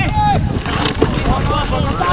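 Rugby players and onlookers shouting over a low wind rumble on the microphone, with a short sharp click about a second in.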